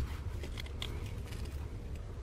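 A few faint clicks of a hand wire crimping tool working an insulated crimp connector onto a wire, over a low steady background hum.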